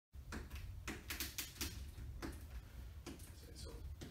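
Irregular light clicks, taps and scuffs of a rubber shower-panel gasket being pressed by hand onto the edge of a glass wet-room panel, over a steady low hum.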